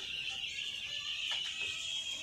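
A dense, steady high-pitched chorus of many six-day-old broiler chicks peeping, with a couple of faint scrapes of a rake through the sawdust litter about a second and a half in.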